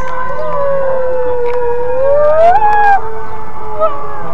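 Sirens wailing: one steady tone slowly sinking in pitch, while a second dips, rises about two seconds in and breaks off near the three-second mark.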